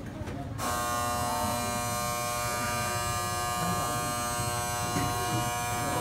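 An electric buzzer sounds one long, steady buzz. It starts abruptly about half a second in and lasts about five seconds.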